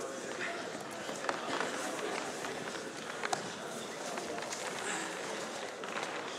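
Indistinct background talk from people around a wrestling mat in a gym, with a few sharp clicks, about one and three seconds in.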